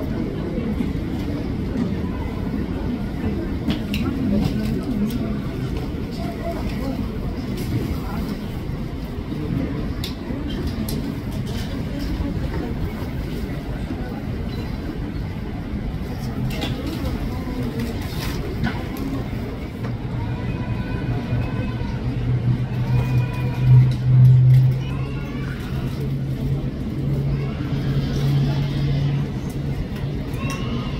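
Outdoor airport ambience: a steady low rumble with indistinct voices in the background. A low engine drone builds in the second half and is loudest about two-thirds of the way through.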